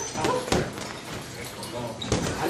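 Boxing gloves landing during sparring: two sharp smacks about half a second apart near the start, with voices in the background.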